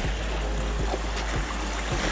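Soft background music with a few faint held notes over a steady rush of outdoor noise from wind and surf on the shore.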